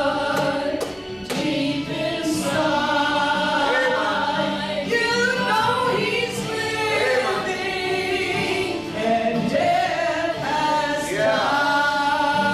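Two women singing a gospel song together through microphones, holding long sung notes.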